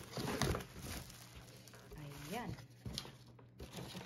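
Plastic wrapping crinkling and a cardboard box rustling as a bagged steam iron is lifted out, busiest in the first second and softer handling after.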